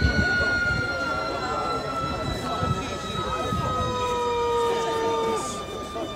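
Whistling rockets from a daytime fireworks battery. A long, high whistle with overtones slides slowly down in pitch and fades. Near the end, a second, lower whistle joins briefly and cuts off suddenly.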